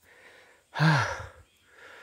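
A man's short, breathy sigh about a second in, falling in pitch, with faint low noise either side of it.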